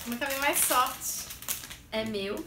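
Crinkly plastic candy bag being handled and pulled out of a pile, with a woman's voice sounding over it without clear words.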